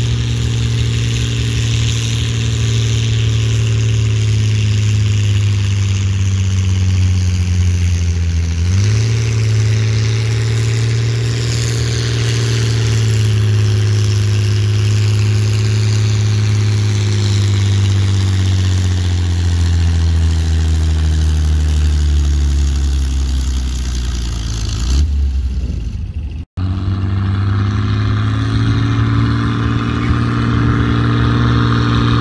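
Antique tractor engine working hard under the load of a pulling sled. Its pitch steps up about a third of the way in, then slowly sinks as the sled bears down and the engine lugs. Near the end the sound breaks off for an instant and resumes with the engine revving back up.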